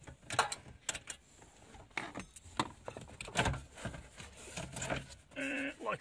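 Irregular clicks, knocks and scrapes of the stereo's metal case and the plastic dash surround being handled as the head unit is worked loose and slid out of its dashboard opening.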